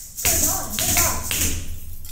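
Kathak footwork: feet stamping rhythmically on a tiled floor, with ankle bells (ghungroo) jingling at each stamp, over a voice reciting the bols.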